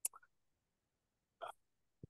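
Near silence in a pause in a speaker's talk, broken by two brief, faint mouth sounds: one right at the start and one about a second and a half in.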